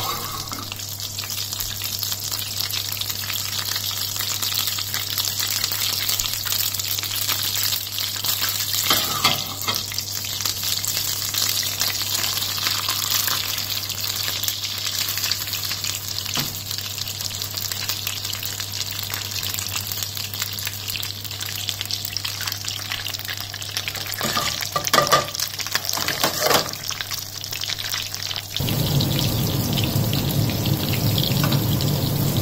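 Butter foaming and sizzling steadily in a hot frying pan on a gas burner; partway through, a floured turbot goes in and fries in the butter. There are a few brief louder crackles about a third of the way in and again near the end.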